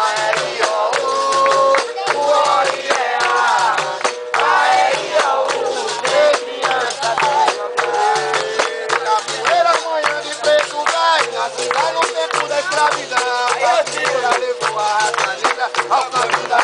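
Capoeira roda music: berimbaus played with caxixi rattles in a steady repeating figure, with voices singing and sharp rhythmic strikes such as hand clapping throughout.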